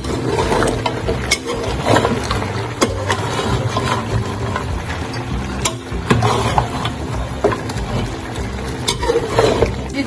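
A metal slotted spatula stirring chunks of beef and spices in a large steel karahi, with irregular scrapes and clinks of metal against the pan.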